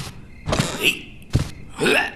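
Sharp wooden knocks as a heavy wooden chest's lid is pushed up and thrown open, one at the start and another about a second and a half in, mixed with a small cartoon creature's short, high effortful vocal sounds.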